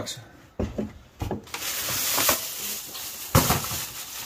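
A thin plastic shopping bag crinkling and rustling as it is handled and pulled out of a cardboard box, for about two seconds. A few light knocks come before it and one sharper knock right after.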